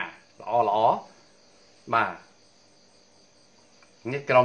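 A man's voice in two short bursts in the first half, then a pause with only a faint, steady high-pitched chirring in the background.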